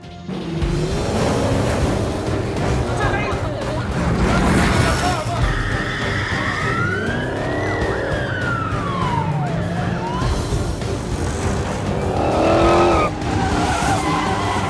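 Police cars in a chase: engines running hard, a siren sweeping up and then down in pitch, and tyres squealing as the cars skid through a turn, mixed with film score.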